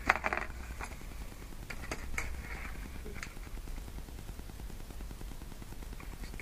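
A few light clicks and clinks, the sharpest right at the start and the rest scattered through the first few seconds, as wire trace and small metal crimp sleeves are handled at the bench. A steady low hum runs underneath.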